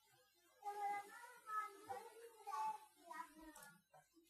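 A child's voice, faint and in the background, starting about a second in and lasting about three seconds.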